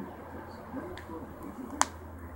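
A single sharp click near the end, over faint background voices and a steady low hum.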